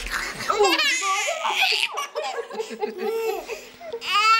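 A baby of about five months laughing in a run of short, high-pitched bursts.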